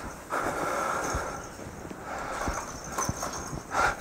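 Footsteps of a man walking across a church platform: a few slow, uneven soft thuds over faint rustle, picked up by his lapel microphone.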